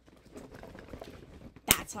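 Small makeup containers and empty eyeshadow pans rattling and clicking as they are handled, ending in one sharp knock near the end.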